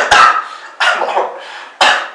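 A person coughing: a run of about four coughs in two seconds, each short and sudden.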